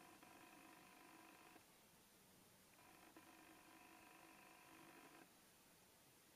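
Near silence, with a faint steady hum of several pitches that sounds twice, for about two seconds each time.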